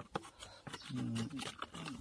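A man's low, drawn-out wordless hesitation sound about a second in, over light clicks and taps of small cylinder parts being handled on a workbench.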